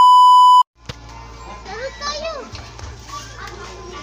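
Colour-bars test-tone beep: one loud, steady, pure beep lasting about half a second at the very start, cut in as an editing effect. After a moment of dead silence and a click, people's voices and a low steady hum follow.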